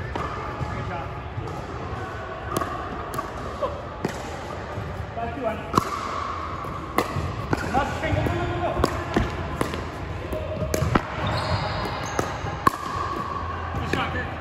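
Pickleball rally: paddles striking the hollow plastic ball and the ball bouncing on the hardwood court, a run of sharp pops at irregular intervals, echoing in a large hall.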